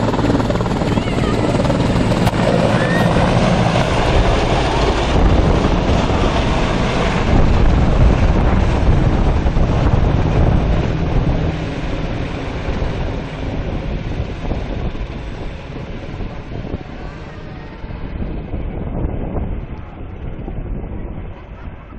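Sikorsky CH-53 Sea Stallion heavy-lift helicopter's rotors and turbines running loud as it lifts off and passes overhead, then fading steadily as it climbs away over the second half.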